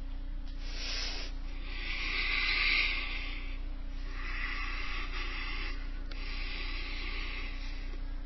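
A person breathing audibly into the microphone: a short breath, then three longer hissing breaths about every one and a half to two seconds, the loudest about two to three seconds in, over a steady low electrical hum.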